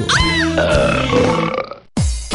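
A long comic burp sound effect at the end of a radio station jingle, over a short music sting that fades out into a brief silence.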